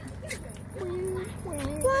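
Soft whimpering: a few short, drawn-out whines, the last one rising near the end.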